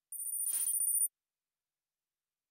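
A short electronic sound effect from the Kahoot! quiz game: a bright, high ringing tone about a second long, starting and stopping abruptly.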